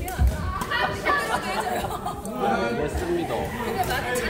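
Several people's voices chattering in a large, echoing gym hall, with a single low thump about a quarter second in.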